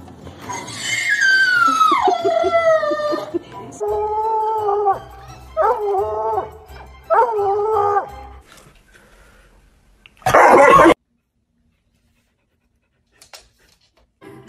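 A dog howling: one long call that falls in pitch about a second in, then three shorter howls. Near the end comes a brief loud burst of noise, then silence.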